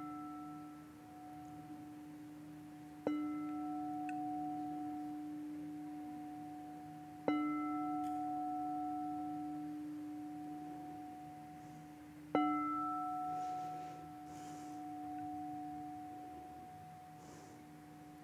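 Singing bowl struck with a mallet three times, about 3, 7 and 12 seconds in, each strike ringing out in a steady low tone with higher overtones and slowly fading, over the ringing of a strike just before.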